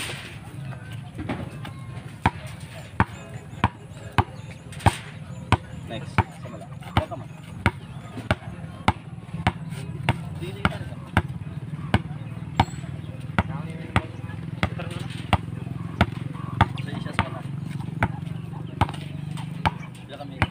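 A basketball dribbled on a concrete road: a steady run of bounces, about three every two seconds.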